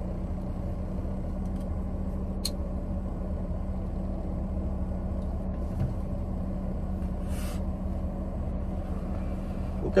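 Steady low hum of a car's engine idling, heard from inside the cabin, with a brief faint breathy hiss about seven seconds in.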